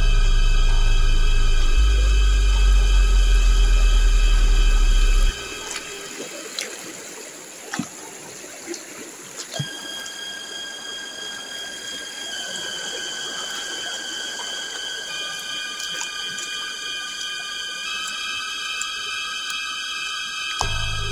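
Eerie background music. A loud deep drone with steady high tones ends suddenly about five seconds in. Thinner sustained high tones follow, entering one after another, with a few faint knocks of footsteps on stones.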